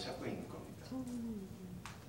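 Quiet speech in a small room: a short murmured word or 'mm', falling in pitch, about a second in, and a single sharp click shortly before the end.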